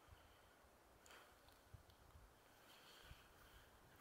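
Near silence: outdoor ambience, with only very faint traces of distant sound.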